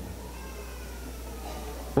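A pause between spoken phrases, filled with a steady low hum and a faint, drawn-out high tone that falls slowly in pitch.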